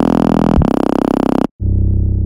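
Synth bass presets played in the Serum software synthesizer: a sustained, buzzy bass note is re-struck with a brief downward pitch swoop, then cuts off suddenly about one and a half seconds in. A darker, duller bass note from the next preset starts right after.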